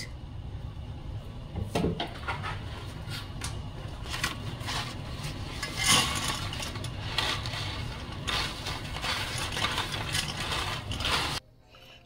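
Water boiling in a stainless steel pot, a steady hiss and bubbling, with a few knocks and clinks against the pot. It cuts off suddenly near the end.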